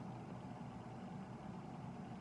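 A faint, steady low hum of background noise with no distinct events.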